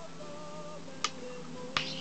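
Two sharp clicks of go stones being set down on a wooden game board, about a second in and again near the end, over background music with held tones.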